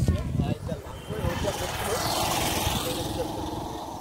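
A motor vehicle passing close by on the road, building up from about a second in and fading away near the end, over voices talking in the first second.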